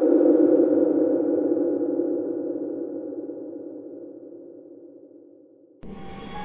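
A sustained, low electronic drone, loudest at the start and slowly fading away over several seconds; a different sound cuts in abruptly just before the end.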